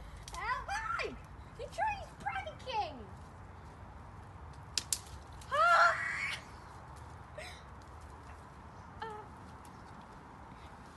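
Short pitched vocal calls, each rising then falling over about half a second: several in the first three seconds, the loudest near six seconds and a faint one near nine seconds. Two sharp clicks come just before the loud call.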